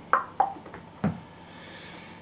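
Three short clicks in a small room, the last a duller knock about a second in, followed by quiet room tone.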